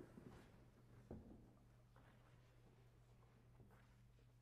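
Near silence: room tone with a steady low hum and a faint knock about a second in.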